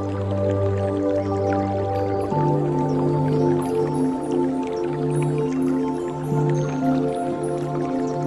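Slow new-age ambient music of long held synth-pad chords, which move to a new chord with a higher bass note about two seconds in. Faint drips of water are mixed in under the music.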